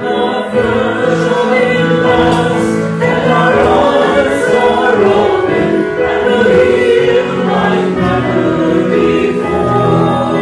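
A choir singing a hymn, with held notes that change every second or two.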